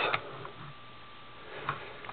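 Quiet room tone with a faint steady tone, and one light click about one and a half seconds in from fingers handling the die-cast police car and its switch.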